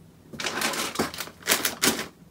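Rattling and clicking of packed items being shifted inside an open hard-shell suitcase as folded scarves are pushed in. It starts about a third of a second in, with a few sharp knocks in the second half.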